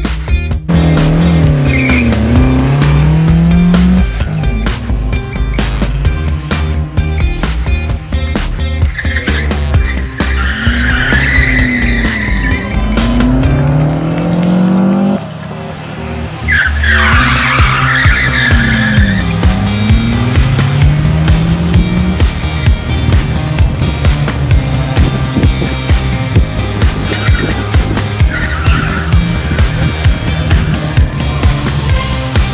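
Classic Lada sedan's engine revving up and falling back several times as it is thrown round the cones, with tyres squealing twice around the middle. A music track with a steady beat plays over it.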